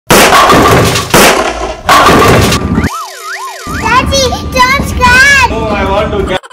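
Edited-in intro sound effects: three loud whooshing bursts, then a synthetic tone that wobbles up and down twice like a cartoon siren, then a run of quick warbling glides.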